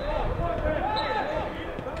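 Distant voices of footballers calling out across the pitch, over a low background rumble.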